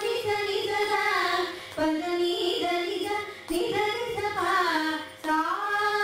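Two women singing a Carnatic ragamalika together in gliding, ornamented phrases, each phrase broken by a short pause about every second and a half, over a faint steady drone.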